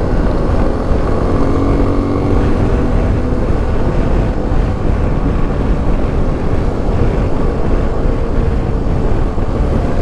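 Suzuki V-Strom 250's parallel-twin engine running at a steady cruise under way, its note drifting only slightly, with heavy low wind rush over the microphone.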